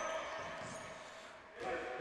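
Faint ambience of an indoor futsal hall with a thin steady hum, fading lower during a pause in the commentary and lifting slightly near the end.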